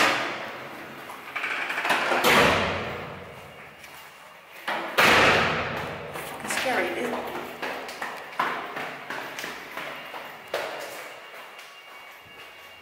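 Two loud thuds in an echoing stairwell, about two and five seconds in, each ringing on for a couple of seconds, followed by lighter knocks as someone goes quickly down the stairs.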